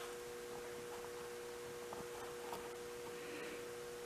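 Quiet, steady background hum of two constant tones over faint room hiss, with a couple of very faint light ticks.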